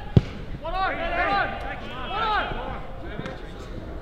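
A single sharp thud of a boot kicking an Australian rules football, just after the start, followed by shouted calls between about one and two and a half seconds in.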